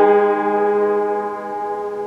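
A chord on an old J. Ramsperger upright piano that has not yet been tuned, held and ringing on as it slowly dies away.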